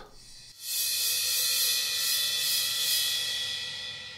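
A sampled suspended cymbal effect from the Wavesfactory Suspended Cymbals library. A bright, shimmering wash with a few ringing tones comes in about half a second in, holds, then slowly dies away.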